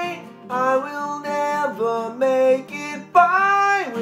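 A man singing a slow, held melody line over a strummed acoustic guitar.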